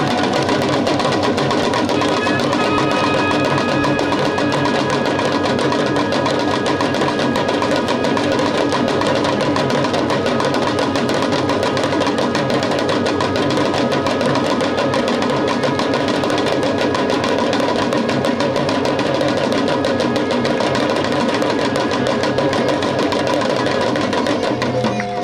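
Ganga Aarti percussion: a hand-held drum beaten fast and steadily while large brass bells ring without a break, a dense continuous clatter with sustained ringing tones.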